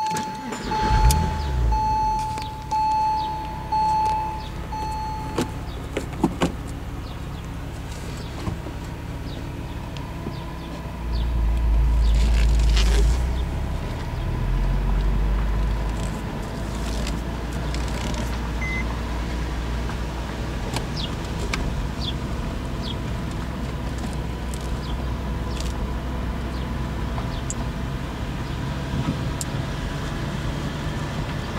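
A 2002 Porsche 911 Carrera (996) flat-six starts about a second in while a seat-belt warning chime beeps about six times, heard from the driver's seat. The engine then idles, grows louder for a few seconds as the car pulls away in the manual gearbox's low gear, and settles to a steady low drone while creeping along at about 10 mph.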